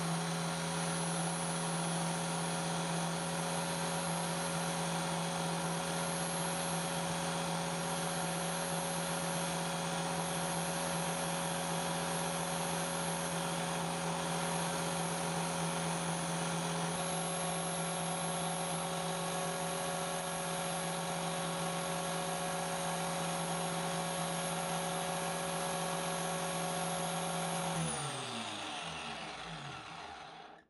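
Electric angle grinder fitted with a buffing wheel, its motor running at a steady whine. Near the end it is switched off and the pitch falls as the wheel winds down.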